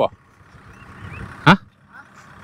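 A faint, steady engine hum under a short spoken syllable about one and a half seconds in.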